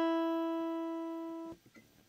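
Acoustic guitar's open high E string ringing out alone as one sustained note, the top note of an open E minor chord picked string by string. It fades steadily and is damped by hand about one and a half seconds in.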